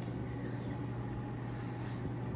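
Steady low hum of room background, with faint light clinks and rustles as a dog moves about on a rug.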